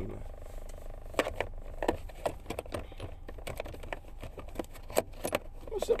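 Inside a car's cabin: a steady low engine and road hum with a run of irregular light clicks and rattles scattered through it.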